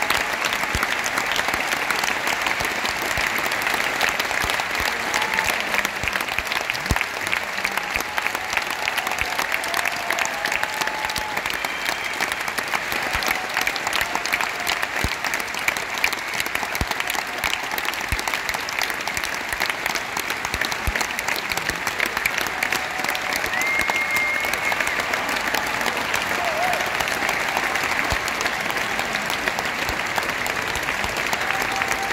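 Large arena audience applauding steadily, a dense wash of clapping throughout, with a few short voices or calls rising faintly above it.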